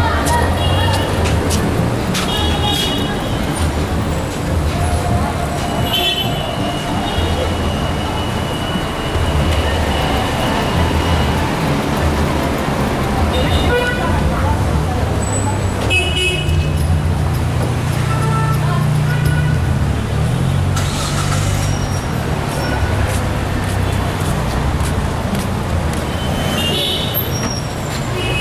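Busy city-street traffic: engines running and cars passing in a steady rumble, with short car-horn toots now and then, one held for about two seconds, and the voices of passersby.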